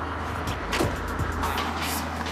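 Car engine idling while a second car drives up alongside, with music playing over it; a short sharp sound about a second in.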